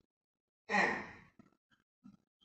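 A man's single breathy sigh-like vocal sound, a short exhaled 'yeah', about two-thirds of a second in, fading over half a second.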